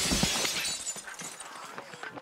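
Glass shattering: a sudden loud crash at the start, then scattering shards that fade away over about a second and a half.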